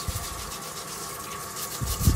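Kitchen tap running steadily into a sink, with a low thud at the start and again near the end.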